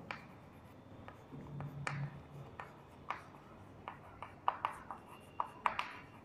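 Chalk tapping and scratching on a chalkboard as short words are written, faint and irregular, with a quicker run of sharp taps near the end.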